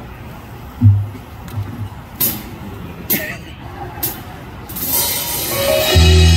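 A live band about to start a song: a few low thumps and sharp clicks from the stage, then a cymbal swell rising from about five seconds in, leading into sustained keyboard and bass chords as the intro begins right at the end.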